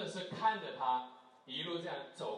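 A person talking, in two short stretches with a brief pause a little past the middle.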